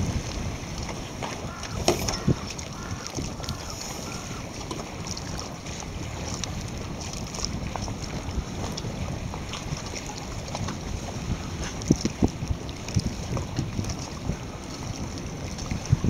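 Wind noise on the microphone over choppy water, a steady low rumble with a few sharp knocks, about two seconds in and again around twelve to thirteen seconds.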